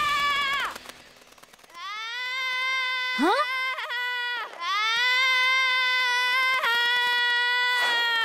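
A cartoon girl's long, high-pitched screams as she hurtles down through the air: two drawn-out cries, the first starting a little under two seconds in and breaking off just after the middle, the second running on to the end. Before them, the last held sung note of a theme song fades out, followed by a short lull.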